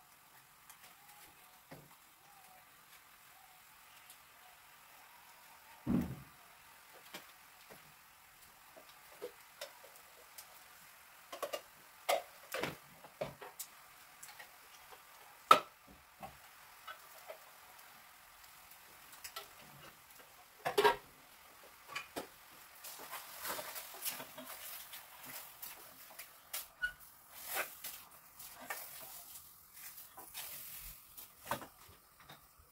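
Kitchen handling sounds: scattered clicks and knocks of a wooden spoon and a plastic spice shaker against a small steel saucepan of chicken on a gas hob, with a sharper knock about six seconds in and a denser stretch of noise near the end.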